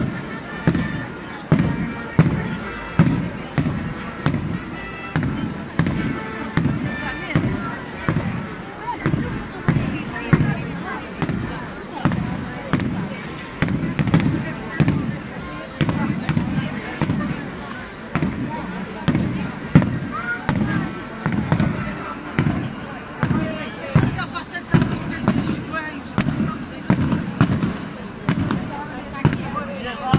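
Processional drums beating a steady march rhythm of about two strong low beats a second, over the chatter of a large crowd.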